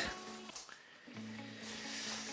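Kitchen scissors cutting open a plastic roasting bag, with soft plastic rustling starting about a second in, over faint background music.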